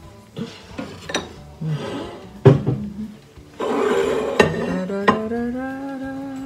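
Serrated bread knife clinking against the plate, then sawing through the crisp crust of a baked focaccia. A woman starts humming near the end.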